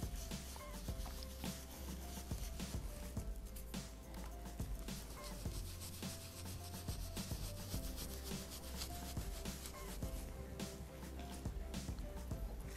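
Dry paint brush worked in small circles over a stencil on a wooden board: a faint, scratchy rubbing made of many short strokes.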